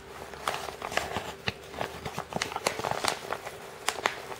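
Irregular crinkles and clicks of a mailing envelope being handled and turned in the hands.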